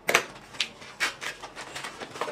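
Handling noises: a plastic wrapper rustling and a few short taps and clicks as a pen is set down on a wooden table and a notebook is handled.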